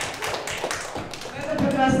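Irregular sharp taps and scattered claps from an audience, with voices murmuring behind them. A voice starts speaking near the end.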